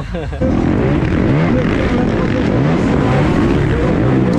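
Several motocross bikes racing together, engines revving up and down through the gears, loud from about half a second in.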